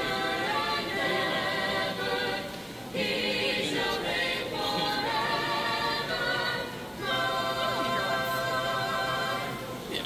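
A choir singing in harmony, long held notes in three phrases with brief breaks between them.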